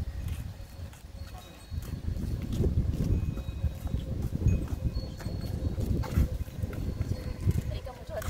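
Wind buffeting the phone's microphone: an uneven low rumble that rises and falls in gusts, heavier from about two seconds in.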